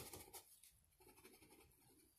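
Faint scratching and rustling of paper, a few small ticks near the start, then a soft, uneven scrape from about a second in.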